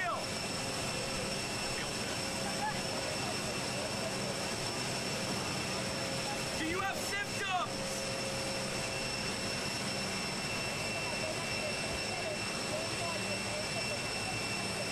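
A jet aircraft running on the tarmac: a steady high whine over a low hum. A brief burst of distant voices comes about seven seconds in.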